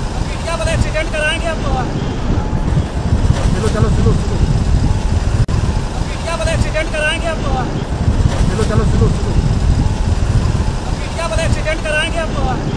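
Road and wind noise from a convoy on the move: a loud, steady low rumble throughout. Shouted voices break in over it several times.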